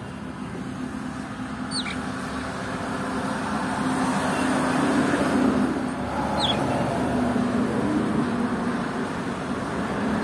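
Steady engine rumble of nearby road traffic, swelling toward the middle and staying loud. Two short high chirps from a budgerigar cut through, one about two seconds in and one past halfway.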